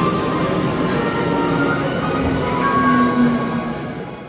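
Subway train noise at a platform as its doors close, under background music with held melodic notes.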